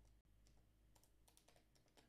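Near silence with scattered faint, irregular clicks of a computer keyboard being tapped to wake the computer from its screensaver.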